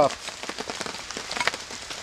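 Low crackling of a small campfire under a wire grate, mixed with soft handling noises as a cup is set down on the ground and a cotton cloth is picked up.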